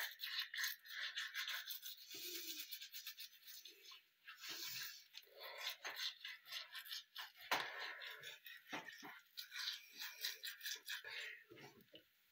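Electric toothbrush brushing teeth: quiet, uneven scrubbing strokes in the mouth.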